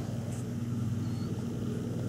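Steady low engine drone, even throughout, with a constant hum and no strokes or changes.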